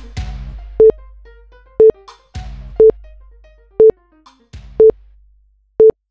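Countdown timer beeping: a short, loud electronic beep on one pitch once a second, ticking down the seconds. Three music chords sound and fade away between the beeps.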